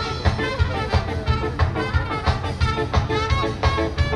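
A live band over a loud outdoor PA playing an up-tempo song with guitars and a fast, steady drum beat.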